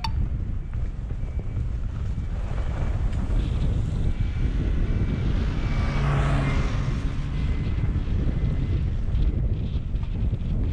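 Wind buffeting the microphone of a skier's camera, with skis sliding on snow throughout. About six seconds in, a flagged snowmobile passes close by, briefly louder, then fades.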